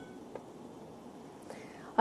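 The last held notes of the bulletin's devotional intro music die away at the start. A quiet gap of faint hiss follows, with two soft clicks.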